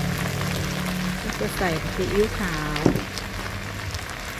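Chinese kale and crispy pork sizzling in a hot wok: a continuous crackling hiss. A single sharp click comes about three seconds in.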